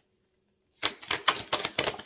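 A deck of fortune-telling cards being shuffled by hand: a dense run of quick card clicks starting about a second in and lasting about a second.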